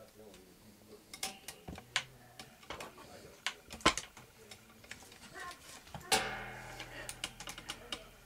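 Faint scattered clicks and taps, with a louder knock about six seconds in, after which a low steady hum sets in.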